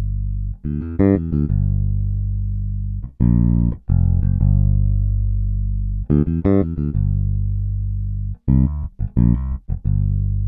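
Evolution Roundwound Bass, a sampled four-string J-style electric bass with roundwound strings, playing a fingerstyle passage with the bridge and neck pickups blended 50-50. Long ringing low notes alternate with four quick runs of short notes.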